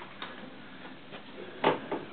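A few light taps, then a sharper knock and a second one near the end: sneakers being set down on carpet, then hands taking hold of a Perfect Pullup doorway bar.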